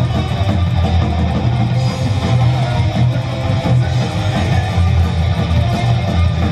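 A psychobilly band playing live at full volume: a coffin-shaped upright double bass, an electric guitar being strummed, and drums, all in one steady dense wash.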